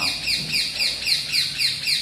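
A bird chirping rapidly and steadily, a run of short, high, falling chirps at about five a second.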